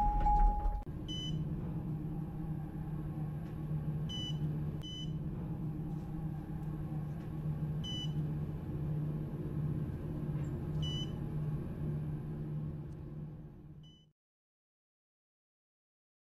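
A steady low hum with six short high-pitched beeps spaced irregularly, opening with one longer, lower beep. It all fades out about fourteen seconds in.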